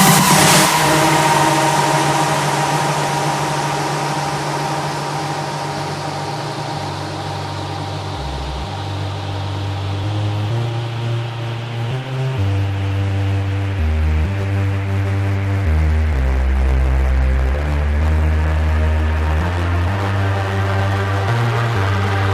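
Big room house track: the loud full-band section cuts off about half a second in and a noise sweep fades downward over the next several seconds. A breakdown of sustained synth chords over long, slowly changing bass notes follows.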